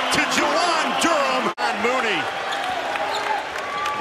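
Basketball game court sound in an arena: a basketball bouncing on the hardwood over crowd chatter. An abrupt edit cut about one and a half seconds in.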